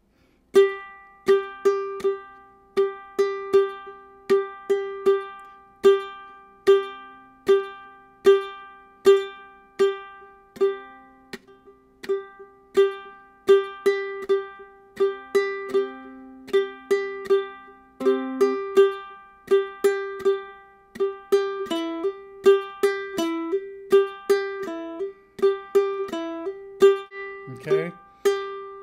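Ukulele played clawhammer style: a steady, repeating rhythm of fingernail down-strokes and thumb plucks on the same few open-string notes. Over roughly the last six seconds the notes begin to change.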